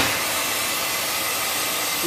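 Safety valve of an MKN Flexichef tilting pan blowing off steam in a steady, loud hiss. The valve has lifted at its set pressure during a calibration test.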